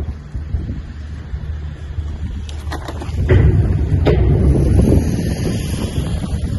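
Wind buffeting the microphone over a low rumble, louder from about three seconds in, with a few short knocks.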